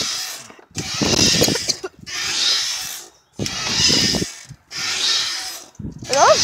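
A playground swing in motion, heard with the phone riding on it: a rough rushing, rubbing noise that swells and fades five times, about once a second, with each pass of the swing.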